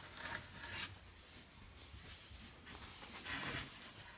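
Faint rustling and rubbing of a carpet piece being moved and smoothed flat by hand on a worktable, with a brief swish in the first second and another about three seconds in.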